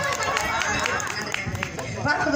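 A quieter lull of faint, overlapping voices, with scattered small clicks and knocks.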